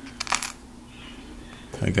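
A quick cluster of light clicks in the first half second from small plastic SIM cards and their clear plastic case being handled on a laptop palm rest, over a faint steady hum.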